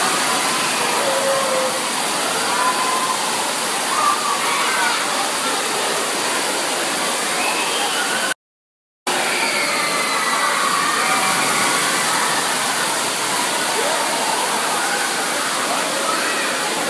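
Steady rush of splashing, pouring water from water-park play equipment, with faint children's voices and shouts mixed in, echoing in a large indoor hall. The sound drops out completely for about half a second just past halfway.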